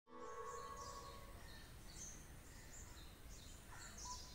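Faint outdoor ambience with scattered short bird chirps over a soft steady hiss, and a faint held tone in the first second and a half.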